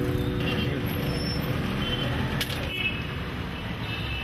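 Street traffic noise: a steady rumble of passing road vehicles, with a few short faint tones over it and a sharp click about two and a half seconds in.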